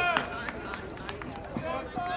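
People shouting on a baseball field during a live play, one call at the very start and another near the end, with a few faint sharp clicks in between.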